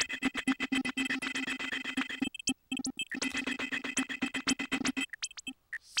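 Glitchy electronic drum pattern playing from a Reason 4 Redrum drum machine: rapid stuttering clicks over steady held tones. It drops out briefly a little past two seconds in and thins to scattered hits near the end.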